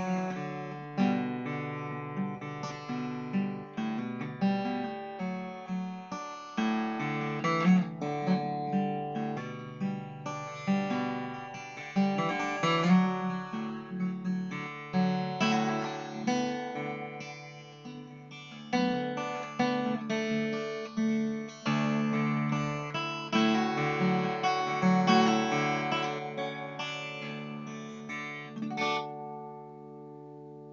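Acoustic guitar in open D tuning, fingerpicked with thumb and finger picks: a slow, mellow tune of ringing plucked notes over a steady low bass drone, the strings left to sustain into each other. A last note rings out near the end.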